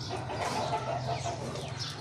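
Chickens clucking, with many short high-pitched chirps mixed in.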